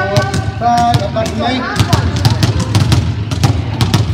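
Several balls being bounced on a sports-hall floor by a group at once: an uneven patter of sharp thuds, several a second, with voices over the first half.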